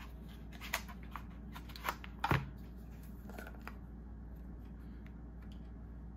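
A few light clicks and rustles from a small plastic jar of cleansing balm being handled and opened, then quiet room tone with a faint steady hum.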